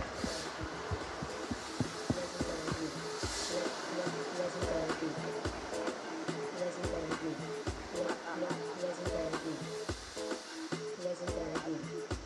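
Blasts of stage smoke and confetti jets give a steady hiss, with two louder rushes near the start and about three seconds in. Music with a steady beat plays underneath.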